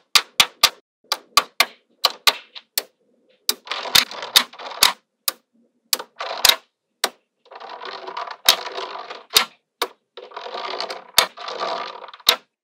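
Small magnetic balls clicking sharply as they snap into place, a few clicks a second at irregular intervals. Three longer stretches of rapid clattering come as strands of balls are laid down across the layer.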